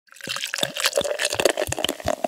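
Liquid sound effect: rapid drips and bubbling plops, several of them dropping in pitch, in a dense run like a pour.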